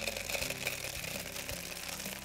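Small stones poured from a bag into a clear plastic container: a steady stream of small clicks as the pebbles hit the plastic and each other.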